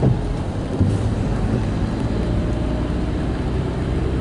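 Car's engine and tyres on a wet road, heard from inside the cabin: a steady low rumble with a faint engine hum.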